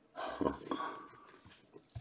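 A person's short breathy exhale, lasting under a second, followed by a few faint small ticks.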